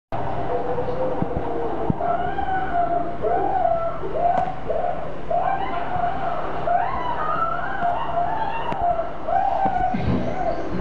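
A dog whining and whimpering, a string of short high-pitched cries that rise and fall, repeating every half second to a second, over a steady low hum.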